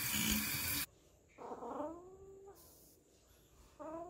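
A sink tap runs briefly and cuts off abruptly a little under a second in. A cat then meows twice, each call dropping in pitch and then holding.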